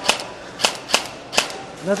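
Airsoft gun fired in single shots, about five sharp cracks a little under half a second apart, with no BBs coming out: it is dry firing.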